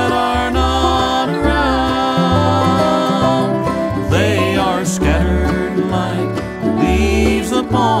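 Bluegrass band playing an instrumental break between sung verses: a lead instrument plays sustained notes with sliding bends over strummed guitar and a bass line that changes notes about twice a second. The singer comes back in at the very end.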